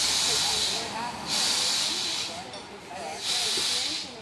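4-4-0 steam locomotive 'York' releasing steam in three loud hissing bursts, each about a second long, near the start, a little over a second in, and near the end.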